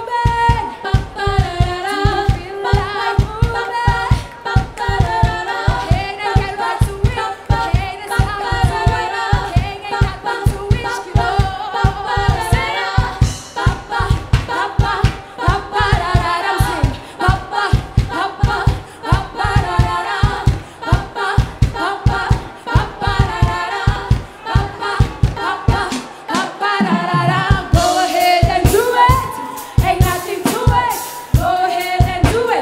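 Live band music: a woman's lead vocal and backing singers over a steady low drum beat. The beat drops out briefly near the end.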